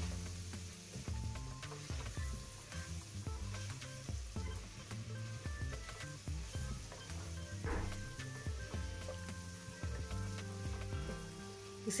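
Potato strips sizzling faintly in oil in a kadhai while a wooden spatula stirs and scrapes them, with light knocks of the spatula against the pan, over soft background music.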